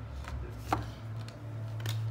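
A paper album booklet being handled: a sharp click about three-quarters of a second in and a second, weaker click near the end, over a steady low hum.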